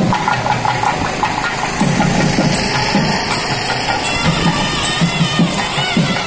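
Loud percussion music of a street procession, drums beating irregularly, mixed with the steady noise of a running engine.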